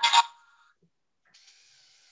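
A loud, brief clatter right at the start as a hand handles a LEGO Mindstorms EV3 robot to start its program, then, about a second and a half in, about a second of faint whirring from the robot's motors as it drives forward under the acceleration/deceleration program.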